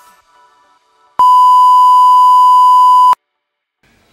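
A loud, steady single-pitch test-tone beep, the reference tone played over television colour bars. It starts about a second in and cuts off suddenly about two seconds later.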